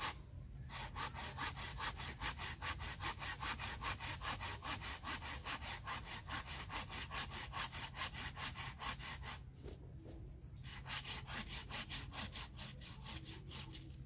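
Hand pruning saw cutting through a thick bougainvillea branch in quick, even back-and-forth strokes, about four a second, pausing briefly near the start and again about ten seconds in.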